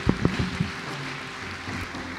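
A few soft knocks in the first half-second, then a faint steady hiss of room noise.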